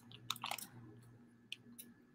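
Faint crinkling and crunching of a plastic bag of mycelium-colonised grain spawn being handled, loudest in the first half-second. Two light clicks follow.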